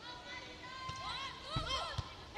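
Players' shoes squeaking on an indoor volleyball court in short chirps that rise and fall, with a dull thud of the ball being struck about one and a half seconds in.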